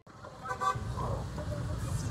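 Street traffic rumbling, with a short car-horn toot about half a second in.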